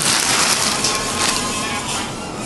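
Plastic wrapping on a crate engine crinkling and rustling as it is handled, a dense crackle with many small clicks.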